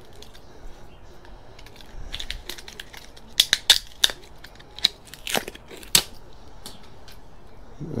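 Sharp, scattered clicks and light scraping as a screwdriver pries the black plastic shroud off the aluminium heatsink of an Intel NUC mini PC. Most of the clicks fall in the middle few seconds.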